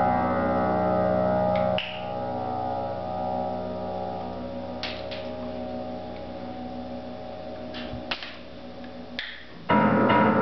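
Upright piano played by a Japanese macaque standing on the keys: a held cluster of notes rings, then at about two seconds a new cluster sounds and slowly fades with a few faint clicks. A loud fresh cluster of notes is struck just before the end.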